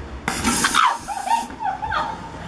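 A woman laughing, over a hiss of noise that lasts about a second near the start.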